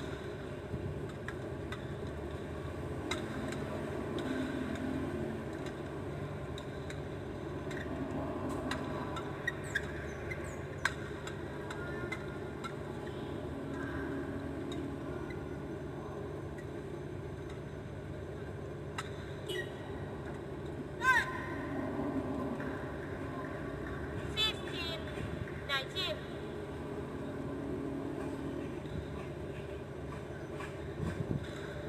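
Badminton hall ambience: a steady murmur of crowd and voices, broken by scattered sharp hits and short squeaks of the kind made by shuttle strikes and court shoes, the loudest about two-thirds through and a quick cluster shortly after.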